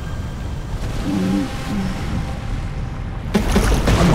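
A low, steady rumble of churning molten lava, with a brief vocal grunt about a second in and a sudden hissing rush near the end.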